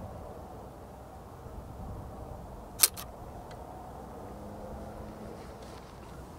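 Leaf shutter of a large-format camera lens tripped by a cable release on its T (time) setting, opening to begin a long exposure. It gives a sharp double click a little under three seconds in, over a faint steady low background.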